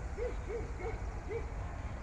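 A bird's short hooting notes, given in a quick series of about three a second, over a steady low rumble.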